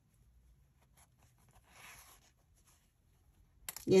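Near silence with one faint, short scratchy rustle about halfway through: yarn drawn through crocheted fabric on a yarn needle while fastening off the yarn end.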